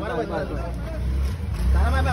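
A low, steady rumble that grows louder about halfway through, under faint crowd chatter.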